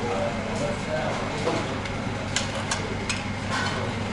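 Restaurant background of indistinct voices over a steady low hum, with a few sharp clinks of dishes being set down on a table in the second half.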